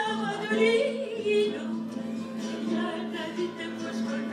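A woman singing with vibrato, accompanied by several acoustic guitars.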